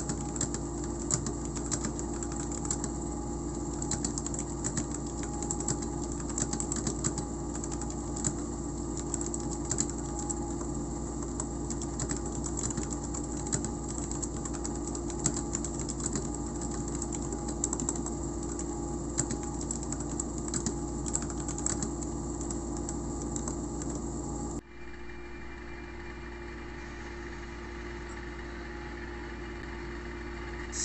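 Fast, irregular typing on a Royal Kludge RK71 mechanical keyboard with red linear switches: a dense run of key clacks over a steady background hum. The typing cuts off suddenly about 25 seconds in, leaving only a quieter hum.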